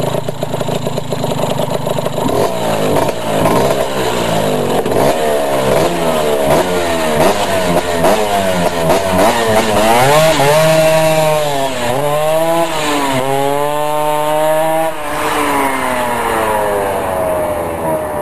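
Two-stroke Vespa scooter engine revved in quick repeated rising blips, then held in longer rising and falling sweeps as it pulls away over gravel. The sound drops off about fifteen seconds in.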